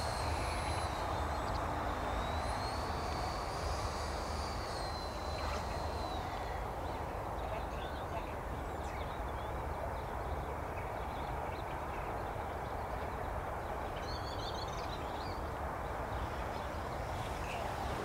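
Thin high whine of a 64 mm electric ducted fan on a model jet flying at a distance, its pitch rising and falling for about the first six seconds before it fades into steady outdoor background noise.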